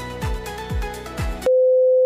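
Background music with a steady beat of about two drum hits a second, cut off about one and a half seconds in by a loud, steady single-pitch test-card beep.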